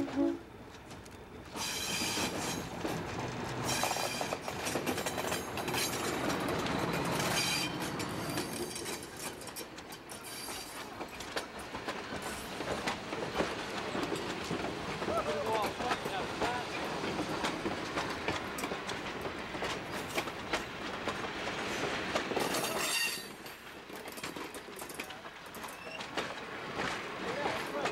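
A diesel-hauled passenger train, led by an Alco RS11 locomotive, rolls past at close range with steady wheel-on-rail noise and several brief high-pitched wheel squeals. The sound swells a second or two in as the locomotive arrives and drops off a few seconds before the end.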